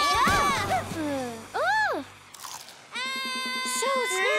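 Cartoon soundtrack: background music with comic sliding effects and a short vocal cry, falling glides in the first second and one rising-then-falling swoop near the middle, then a quieter gap before steady held music chords with an even pulse.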